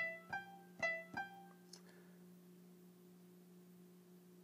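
GarageBand for iPad's Grand Piano sound playing four short single notes in the first second and a half, alternating between two pitches, each fading quickly.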